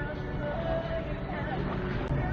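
Street traffic noise and a steady low engine hum heard from inside a car, with faint voices of people outside.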